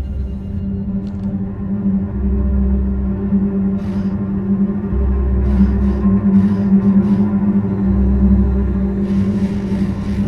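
Ominous horror film score: a steady low drone with a deep bass pulse that swells about every three seconds, and faint airy whooshes in the second half.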